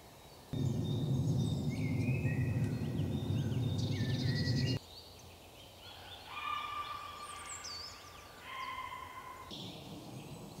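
Small woodland birds singing, with chirps and repeated trilling phrases, busiest in the second half. For the first few seconds a loud low rumble sits under the birdsong, then cuts off abruptly.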